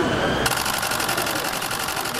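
A camera shutter firing in a rapid continuous burst of even clicks, starting about half a second in, over steady street noise.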